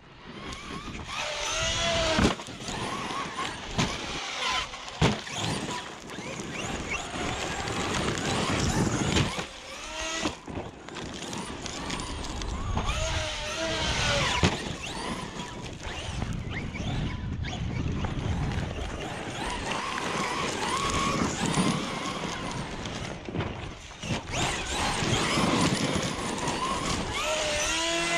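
Traxxas XRT 8S electric RC truck driven hard over gravel: its brushless motor whines up and down in pitch with the throttle over a steady rush of tyres on gravel. Several sharp thumps, the truck landing jumps, come about two, five and ten seconds in.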